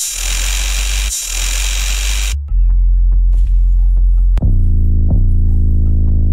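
Drill-style 808 bass samples auditioned one after another. The first hits carry a loud hiss over the bass for about two seconds. Then comes a long, deep, distorted 808 note, re-triggered twice in the second half, each attack with a quick downward pitch drop.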